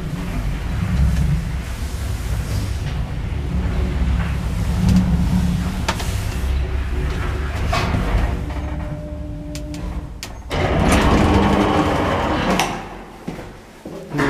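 A 1996 KMZ passenger lift travelling, heard from inside the car as a steady low rumble. It slows and stops with a few sharp clicks, and about ten and a half seconds in its sliding doors open with a loud, noisy rumble lasting about two seconds.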